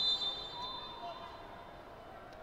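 Faint murmur of a sparse stadium crowd, with a faint, steady, high whistle tone that fades out about a second in.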